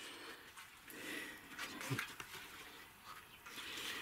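Faint, irregular rustling of tomato leaves brushing against the camera as it is moved through dense plants.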